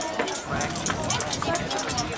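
Indistinct voices and shouts of players and spectators at a children's football game, overlapping one another, with repeated short sharp clicks among them.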